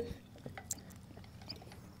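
A metal hook tool prying up a buried septic tank lid: one sharp click at the start, then a few faint ticks and gritty scrapes as the lid comes free.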